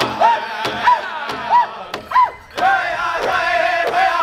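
A powwow drum group singing a double-beat contest song in high, strained voices while striking a large bass drum together with sticks. Short high calls rise and fall about every two-thirds of a second, and the singing dips briefly just after the middle.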